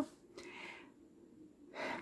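A woman's audible breath, a soft rush of air about half a second in, then a short intake of breath near the end just before she speaks again.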